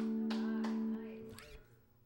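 An acoustic guitar's final strummed chord ringing on, then stopping abruptly about a second in.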